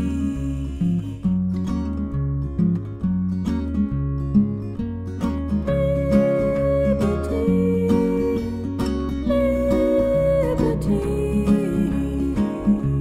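Instrumental break of a song: acoustic guitar with a bass guitar line moving underneath. A higher melody line holds long notes through the second half.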